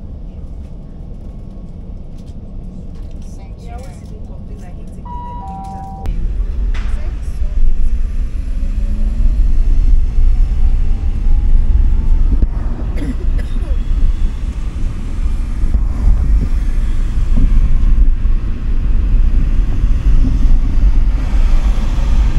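A steady low hum with a two-note falling chime about five seconds in. Then, from about six seconds, a car being driven: a loud, steady low rumble of engine and road noise, with a faint whine rising in pitch for a few seconds.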